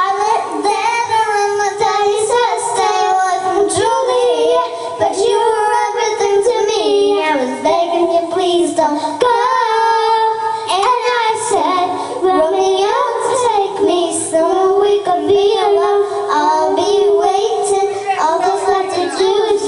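Young girls singing a pop song into handheld microphones, their voices carrying a continuous wavering melody.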